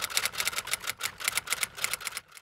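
Typewriter-style key-clicking sound effect: a rapid run of sharp clicks.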